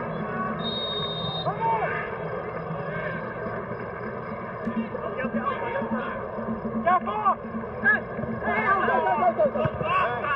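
Referee's pea whistle, one short steady blast about a second in, over the murmur of the stadium. From about halfway through, players shout out repeatedly across the pitch.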